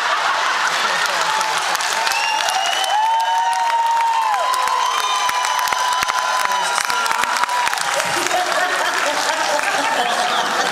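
Concert audience applauding, many hands clapping at once, with several long high whistles held through the middle.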